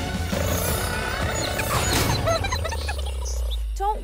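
Cartoon background score with sound effects: a steady buzz over a low rumble, and a sharp whoosh about two seconds in.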